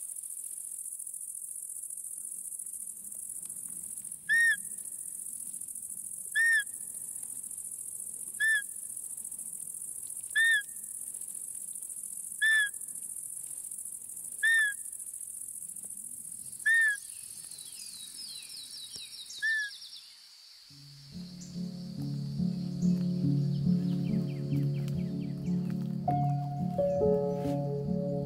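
Crickets chirring steadily in a field at dusk, with a short, high call repeated eight times about every two seconds. Background music comes in about three-quarters of the way through and replaces them.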